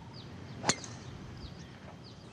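A golf club striking the ball on a tee shot: one sharp, short crack about two-thirds of a second in. Faint bird chirps can be heard over the quiet outdoor background.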